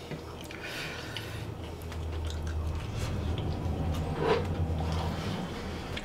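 A person biting into and chewing a mouthful of crispy roast potato, with a crunchy patch about a second in, over a low steady hum.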